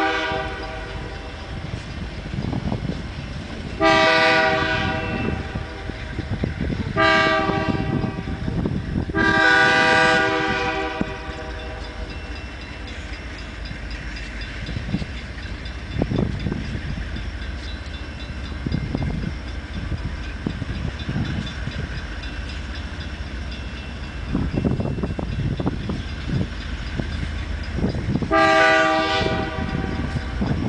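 Union Pacific diesel locomotive's air horn sounding for a grade crossing: a blast just ending as it starts, then long, short-ish and long blasts in the crossing pattern, and one more blast near the end. Between blasts the locomotives' diesel rumble and the train's running noise grow louder as it approaches.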